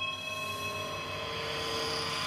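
Outro sting of the closing logo card: a sustained synthesized chord of several held tones over a soft hiss.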